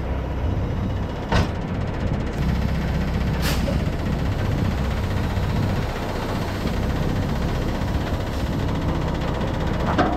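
Semi-truck diesel engine running low and steady, with a single sharp knock about a second and a half in.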